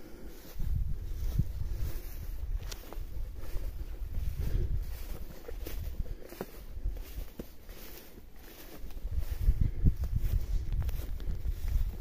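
Wind buffeting the microphone in an uneven low rumble that swells and fades, with footsteps on dry cut grass.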